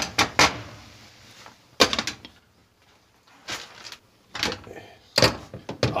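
A spatula knocking and scraping against a frying pan: about six separate short clacks, spaced a second or so apart.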